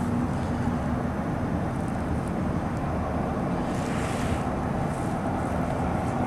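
Steady low rumbling background noise, with a brief hissing swell about four seconds in.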